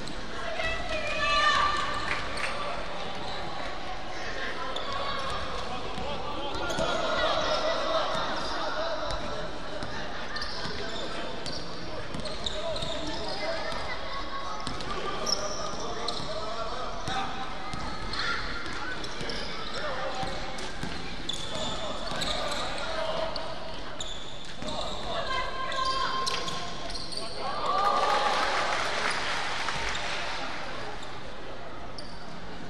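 A basketball bouncing on a hardwood gym floor during a children's game, with children's voices calling across a large, echoing gym. The voices are louder about a second and a half in and again near the end.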